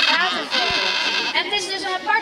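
People's voices talking, several overlapping, with no clear words.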